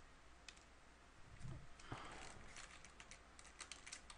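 Faint clicking of a computer mouse and keyboard: a couple of scattered clicks, then a quick run of them in the second half, with a soft low bump about halfway.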